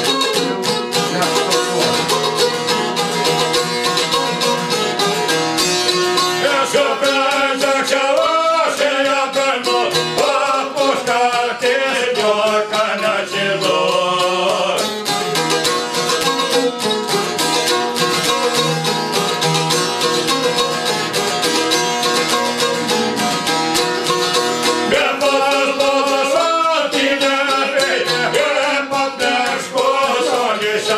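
Albanian folk song: long-necked çifteli lutes plucked in a fast, busy pattern, with a man singing long wavering phrases about six seconds in until about fifteen seconds, and again near the end.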